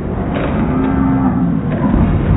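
Bowling alley sound slowed down and pitched low by slow-motion playback: a low rumble with a deep, drawn-out moaning tone that rises and falls for under a second.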